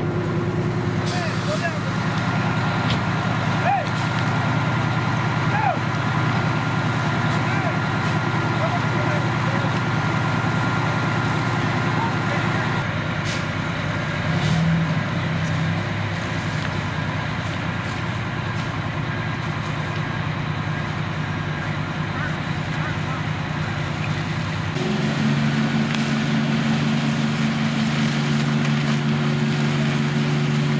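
Fire engine diesel engines running steadily at the scene, a continuous deep drone. About 25 seconds in, the engine note steps up higher and louder as the pump is throttled up and the deck gun starts flowing.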